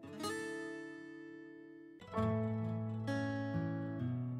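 Background music on acoustic guitar: plucked chords that ring and fade, struck just after the start and again at about two and three seconds in.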